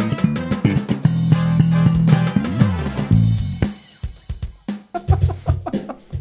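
Ibanez SRMD200 medium-scale (32-inch) electric bass played through an amp with a drum groove behind it. The full groove stops about three and a half seconds in, and a few sparse bass notes and slides follow.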